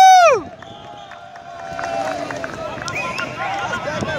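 One loud yell at the start, rising and falling in pitch for about half a second. Then, from about two seconds in, several players call and shout over each other during an outdoor football game, with scattered sharp knocks.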